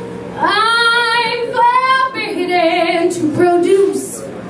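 A woman singing into a microphone: a slow phrase of a few long held notes, the first sliding up into pitch about half a second in.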